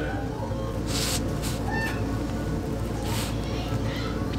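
Background music laid over the video, with two short hissy sweeps about two seconds apart.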